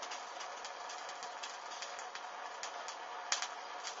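Gas torch hissing steadily while a bra cup burns, the fabric giving irregular crackles and pops, with one sharper pop a little after three seconds in.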